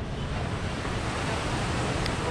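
A steady rushing noise with a deep rumble underneath, growing slightly louder near the end.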